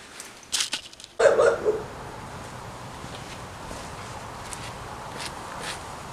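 A few sharp clicks and knocks, then steady outdoor background noise with a brief pitched sound just after it begins and a few faint ticks.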